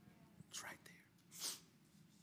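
A man's breath, two short, noisy draws of air about half a second in and again, louder, near 1.5 s, picked up close on a lapel microphone.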